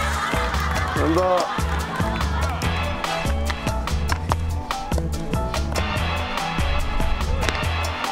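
Background music with a quick, steady beat and a repeating bass line.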